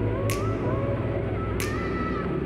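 Light aircraft's engine running at reduced power on final approach with full flaps, a steady drone heard through the headset intercom feed. Faint wavering whistle-like tones sit above the drone, and there are two short clicks, one near the start and one past the middle.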